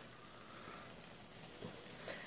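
Potato doughnuts frying in a small pan of hot oil: a faint, steady sizzle, with one light click a little before the middle.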